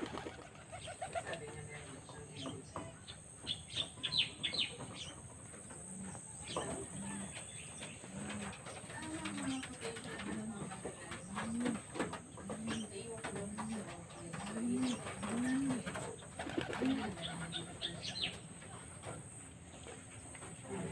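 A dove cooing in a steady series of low notes, about one a second, through the middle stretch. Small birds chirp in short high bursts near the start and near the end.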